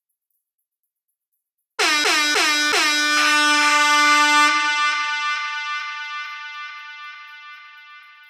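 DJ air horn sound effect: a few quick blasts, about three a second, then one long held blast, fading away through a long echo. It comes in suddenly out of silence about two seconds in.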